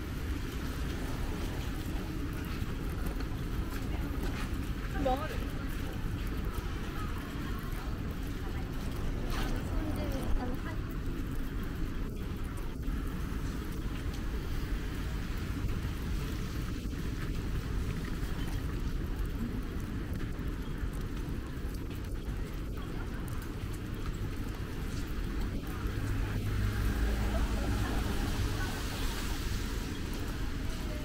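Busy city sidewalk ambience in light rain: indistinct voices of passersby, footsteps on wet paving and a steady rumble of traffic.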